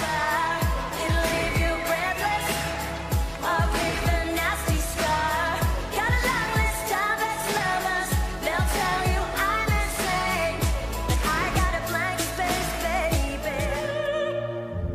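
A singer performing a pop song with an East Asian flavour over a backing track. Deep drum hits that drop in pitch recur throughout under the voice.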